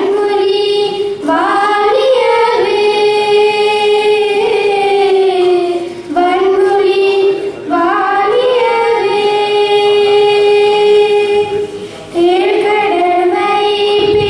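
Two young girls singing a slow song into microphones through a PA, with long held notes and short breaks for breath about six and twelve seconds in; no instruments are heard.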